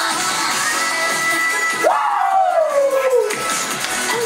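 Upbeat P-pop girl-group dance song playing. About two seconds in, the beat drops out under a long vocal whoop that jumps up and then slides down in pitch, before the music picks up again near the end.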